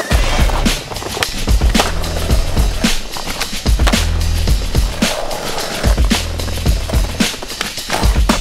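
Skateboard popping, landing and rolling on stone paving, mixed with electronic music that has a deep bass line.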